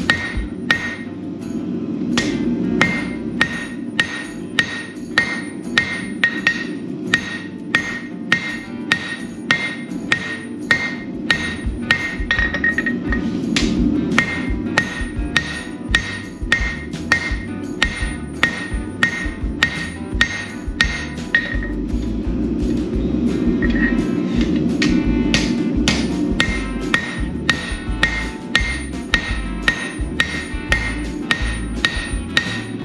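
Hand hammer striking red-hot 3/4-inch steel sucker rod on a steel anvil in a steady rhythm of about two blows a second, forging the boss of a pair of tongs.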